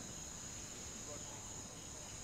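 Faint, steady high-pitched drone over low background noise, with no change through the pause.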